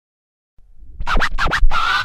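DJ turntable scratching in a short hip-hop intro sting: after a low rumble swells up, about four quick sweeping scratch strokes come in from about a second in.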